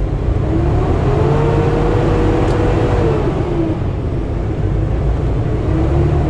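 Semi-truck diesel engine heard from inside the cab, pulling through an intersection under a steady low rumble. A whine rises in pitch over the first couple of seconds, holds, then drops about three seconds in, and begins rising again near the end.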